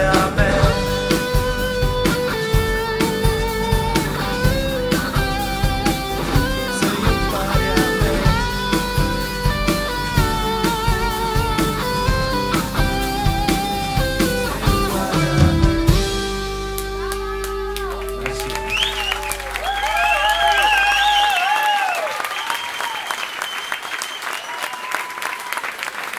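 Live pop-rock band of acoustic and electric guitars, bass and drums playing the instrumental ending of a song, with an electric guitar line on top. About sixteen seconds in the band stops on a final chord that rings for a few seconds while the audience cheers and applauds.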